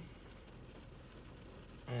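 Faint, steady low background hum with no distinct event, and a drawn-out spoken word beginning near the end.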